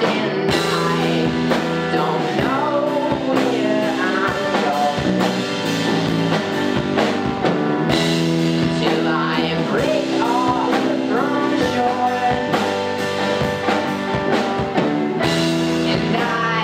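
Rock band playing live: electric guitars, keyboard and drum kit over held chords, with a steady drum beat and a melody line that bends and wavers in pitch.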